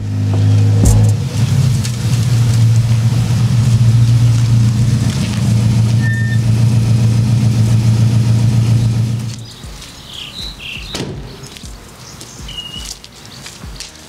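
A car engine running steadily at idle with a low, even note, cutting off about nine and a half seconds in. After it, birds chirp a few times.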